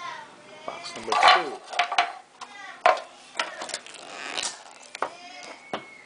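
Hard plastic clicking and tapping, several sharp clicks scattered through, as a plastic card case or package is handled and worked at, over background voices.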